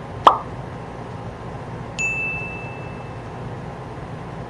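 A short plop sound effect with a quickly falling pitch, then about two seconds in a single bright ding that rings out for about a second, over a steady background hiss.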